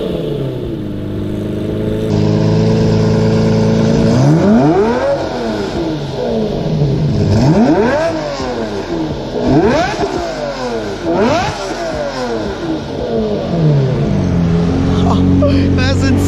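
Lamborghini Murciélago LP640's V12 idling, then blipped four times, each rev rising and falling quickly in pitch, before settling back to a steady idle near the end.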